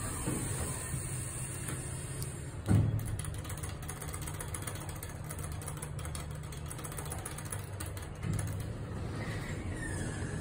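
Elevator car machinery running with a steady low hum, broken by one heavy thump about three seconds in. The hum grows louder about eight seconds in, and a faint tone sounds near the end.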